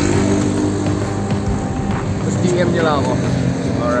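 Road traffic passing, motorcycles and cars, under background music, with a brief bit of voice near the end.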